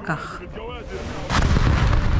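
A sudden loud explosion a little past halfway through, a blast followed by a continuing deep rumble.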